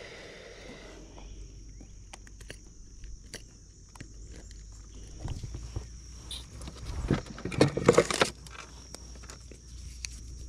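Handling noises in a fishing kayak: scattered clicks and knocks of hands on the plastic hull and tackle, with a louder burst of rustling and knocking about seven seconds in, as a small fish is held and pliers are picked up to unhook it. A faint steady high-pitched tone runs underneath.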